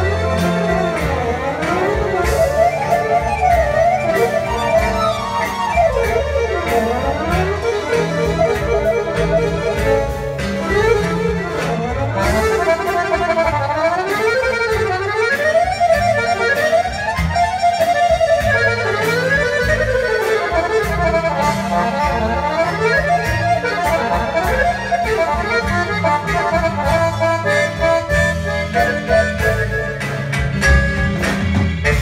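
Balkan accordion music played live by accordions in fast runs that sweep up and down, over a steady bass line from a double bass.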